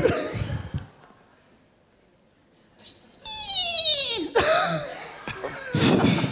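Audience laughter: after a near-quiet second or two, a high-pitched laugh with a falling pitch breaks out about three seconds in, followed by more laughing.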